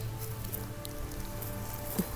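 Light crackling of dry wood-chip mulch under a hand, with a low steady rumble underneath.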